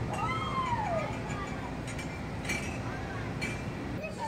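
A single high-pitched wordless call from a young child. It slides up and then down over less than a second, and a fainter short call follows about three seconds in. A couple of light knocks sound between them.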